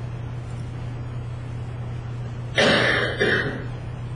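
A person clearing their throat loudly in two quick bursts about two and a half seconds in, over a steady low hum.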